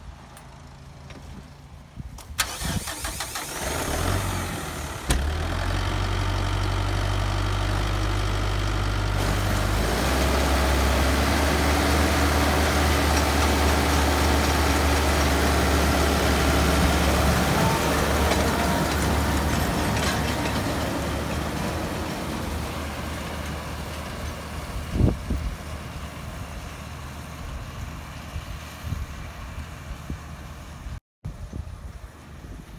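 Kubota M9960 tractor's diesel engine cranking and starting about four seconds in, then idling steadily. About ten seconds in it runs louder as it pulls the round baler off through the hay, then fades gradually as the rig moves away, with one sharp knock near the end.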